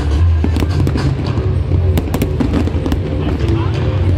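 Large aerial fireworks display bursting in quick succession: many sharp bangs and crackles, over crowd voices and loud music with a heavy, steady bass.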